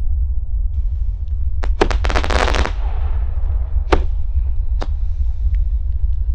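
Small consumer firework battery (Xplode XP013, category F2, 9 shots) firing: a couple of sharp pops, then a dense rapid rattle of pops about two seconds in, then single sharp reports near four and five seconds, over a steady low rumble.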